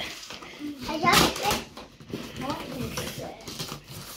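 Young children's voices: short exclamations and chatter in a small room.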